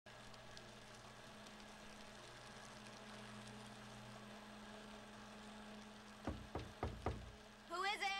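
Faint room tone with a low steady hum, then four quick knocks about six seconds in, roughly a quarter second apart.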